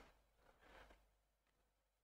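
Near silence: room tone, with two faint, brief soft sounds, one at the very start and one under a second in.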